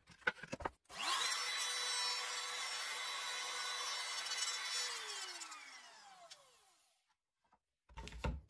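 Compact trim router switched on, spinning up quickly and running at a steady high speed for about four seconds as it routes into plywood, then switched off, its pitch falling steadily as the motor spins down.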